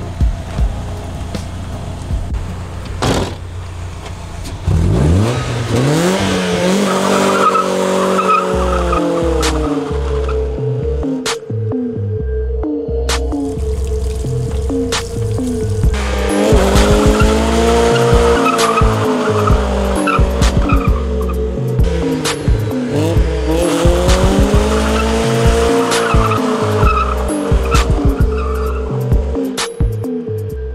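Music with a steady beat plays over a Mazda Miata's four-cylinder engine revving and its rear tyres squealing as it tries to do a burnout.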